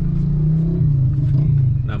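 Car engine and road noise heard inside the cabin: a steady low drone that dips slightly in pitch about halfway through.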